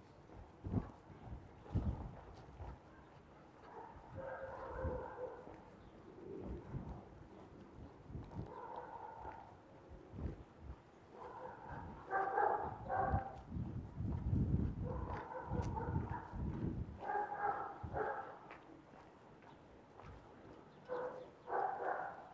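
Pigeons cooing in short repeated phrases every few seconds, with a few low thuds in between.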